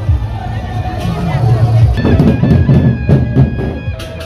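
Crowd voices, then from about two seconds in a gendang beleq ensemble playing: its large double-headed barrel drums are struck in quick strokes, with ringing tones above them.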